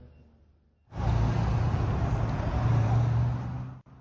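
Street traffic noise: vehicles running on a city road, a steady low rumble with road hiss. It starts about a second in and is cut off just before the end.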